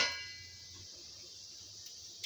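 Metal kitchenware ringing out and fading within about half a second after a clatter, then a quiet kitchen with a low hum.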